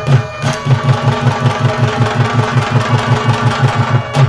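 Live bhangra music: a dhol drum beating a fast, even rhythm of about six to seven strokes a second, with a held melodic line above it.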